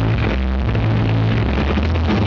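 Rock band playing live on stage with electric guitars, loud and continuous, recorded from the audience.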